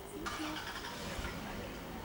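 Indistinct background voices over a steady outdoor noise.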